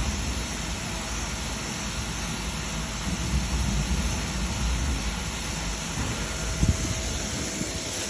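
Fire hose spraying a jet of water onto a burning house: a steady rushing hiss with a low rumble beneath it. A couple of sharp knocks come near the end.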